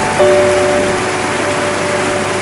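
Steady rushing water of a small cascade, with soft background music of long held notes over it; a new chord comes in just after the start.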